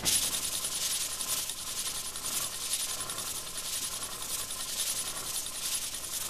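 Cast-iron sole of a Stanley No. 4 Bailey smoothing plane being rubbed back and forth on 500-grit sandpaper stuck to glass, a steady gritty rasping that swells and fades with each stroke. The plane sole is being lapped flat.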